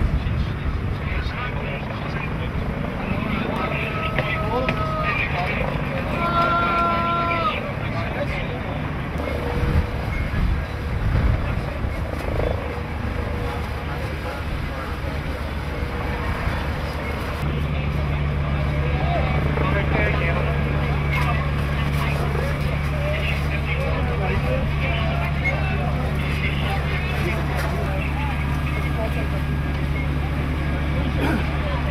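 Indistinct voices over the steady low rumble of a running engine. Two short pitched tones sound a few seconds in, and a steadier, louder engine drone sets in a little past halfway.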